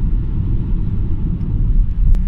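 Steady low rumble of road and engine noise heard inside a car's cabin while driving at motorway speed.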